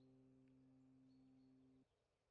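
Near silence: only a very faint steady low hum that cuts off near the end.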